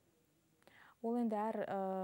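Speech only: about a second of near silence, a short breath, then a woman's voice starting up. It draws one vowel out in a long, steady hesitation sound.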